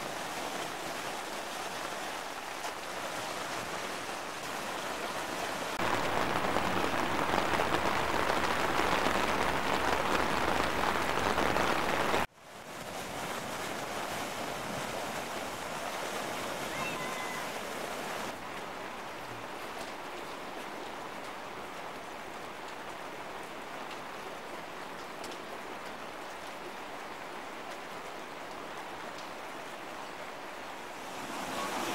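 Swollen, flooding river water rushing against and under a low bridge, a steady rushing noise. It is louder for a few seconds in the first half, breaks off suddenly at an edit, and carries on a little quieter.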